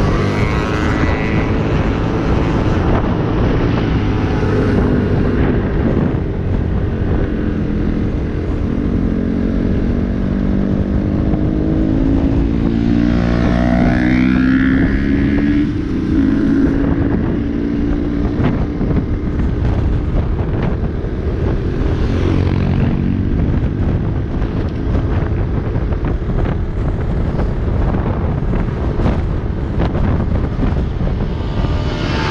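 Small motorcycle engine running at road speed, heard from on board the bike, its note rising and falling with the throttle. Heavy wind buffeting on the microphone runs under it throughout.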